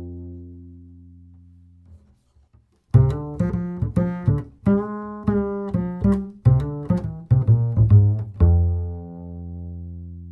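Double bass played pizzicato: a low note on Galli BSN 900 strings rings and dies away, then after a brief silence the same medium-range lick is played on Pirastro Evah Pirazzi strings, a quick run of plucked notes ending on a low note that rings on.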